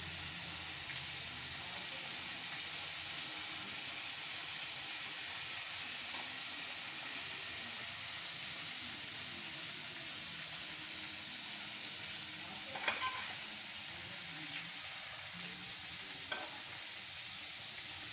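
Hot oil sizzling steadily in a frying pan, with a couple of small clicks about thirteen and sixteen seconds in.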